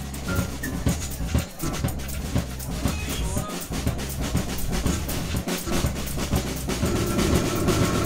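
Live band music: an acoustic drum kit playing a steady, driving groove over a sustained synth bass and electronic programming. The sound fills out in the middle range near the end.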